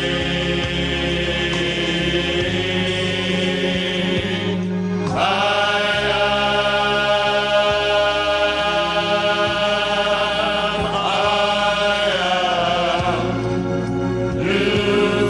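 Male vocal ensemble singing a gospel song in close harmony. They hold long sustained chords that shift to a new chord about five seconds in and again twice near the end.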